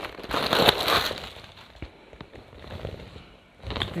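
Rustling and crackling of a quilted handbag being handled and turned over, loudest in the first second, followed by a few faint clicks.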